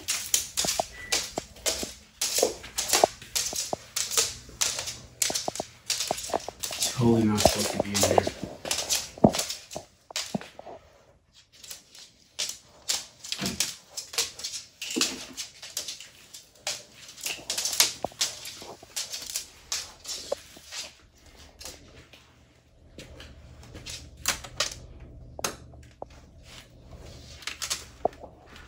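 Claws of an Argus monitor lizard clicking and tapping on hard tile and wooden flooring as it walks, in quick irregular runs of sharp taps that thin out in the middle.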